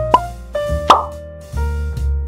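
Two cartoon plop sound effects about three-quarters of a second apart, the second louder, over background music.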